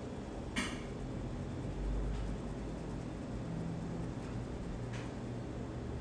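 Quiet room tone with a steady low hum, and a light click about half a second in.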